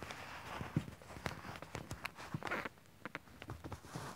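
Handling noise as a camera is picked up and set down on a surface: rustling with a string of small knocks and clicks, thinning out to a few scattered taps after about two and a half seconds.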